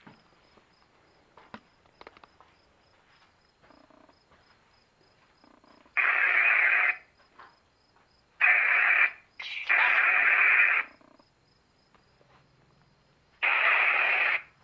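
Necrophonic spirit box app on a smartphone giving out short bursts of radio-like static through the phone's speaker: four loud bursts, each under a second long, starting about six seconds in. The app is running without having been switched on, which she puts down to the app goofing up.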